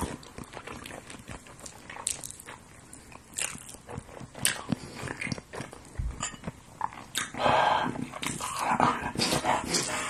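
Close-up wet chewing, biting and lip-smacking of a whole block of raw sashimi tuna eaten by hand, with many short sticky clicks, and a louder, longer mouth noise about seven seconds in.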